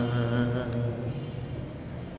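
A man's solo unaccompanied voice reciting a naat, holding a long sung note that wavers with vibrato and grows quieter in the second half.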